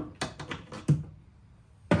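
A quick run of short clicks and knocks, about six in the first second and one more near the end. They come from the old rear door check (door stop) of a 2017 Honda Ridgeline being worked out through the access hole in the inner door frame.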